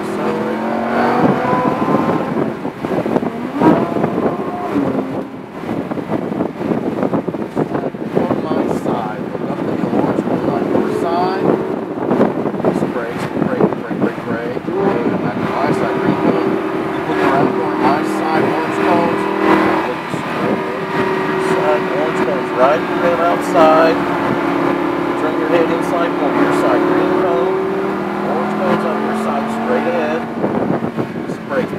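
Supercar engine heard from inside the cabin, running under steady load through the corners. Its note holds for long stretches and drops lower near the end.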